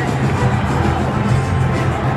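Football supporters' band in the stands: bass drums beating a steady rhythm with brass, over a loud crowd.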